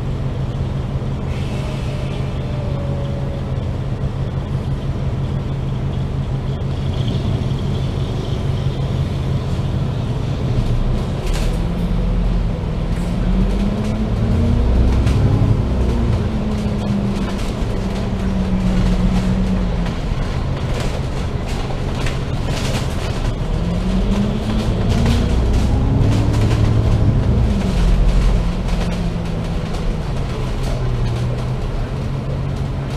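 Double-decker bus's diesel engine heard from inside the upper deck. It idles steadily at first, then pulls away about twelve seconds in, its pitch rising and dropping with the gear changes. It speeds up the same way again near the end, with light clicks and rattles once the bus is moving.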